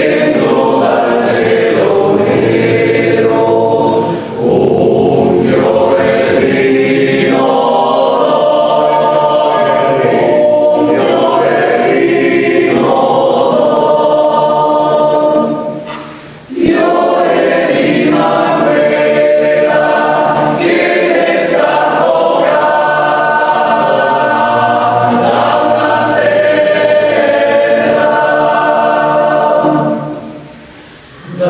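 Male choir singing a slow song in several-part harmony, unaccompanied, with a brief breath about four seconds in and a full pause between phrases about sixteen seconds in.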